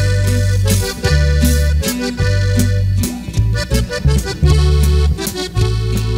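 Norteño band playing an instrumental intro: accordion carrying the melody over a deep, steady bass line, in a regular dance rhythm.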